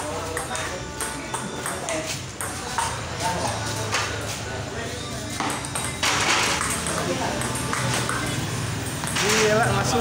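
Table tennis rally: the ball is hit back and forth, with quick sharp clicks of ball on paddle and table, and a louder burst of noise about six seconds in.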